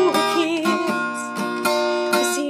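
Acoustic guitar strummed in a steady rhythm, with a woman's voice singing over the chords.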